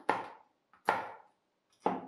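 Large kitchen knife chopping walnuts on a cutting board: three sharp strikes of the blade against the board, about a second apart.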